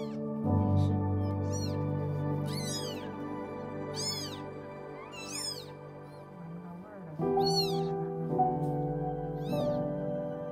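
Newborn kittens mewing: a series of short, high-pitched mews that rise and fall, about seven of them a second or two apart, over soft background music.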